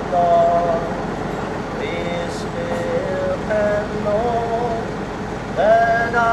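A voice singing in long held notes over a steady hum of street traffic.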